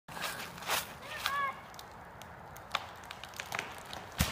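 Footsteps crunching through dry fallen leaves: a handful of separate crackly steps. A short, faint pitched call comes about a second in.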